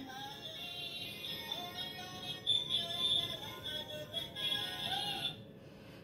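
Electronic melody from a kids' ride-on toy car's musical steering-wheel horn, playing quietly and stopping about a second before the end.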